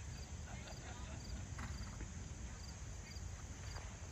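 Soft hoofbeats of a horse trotting on a sand arena, faint under a steady low wind rumble on the microphone, with an insect chirping at regular intervals and faint distant voices.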